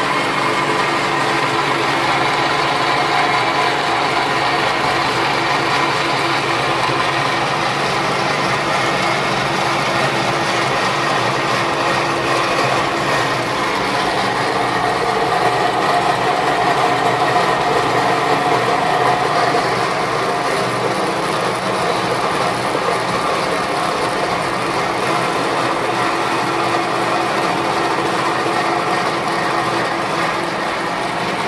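Small flat-die pellet mill running under load: a 4 HP single-phase 220 V electric motor drives the roller through an oil-filled gear reducer, pressing ground alfalfa through a 5 mm die. A steady mechanical running sound with an even hum and grinding of the roller on the die.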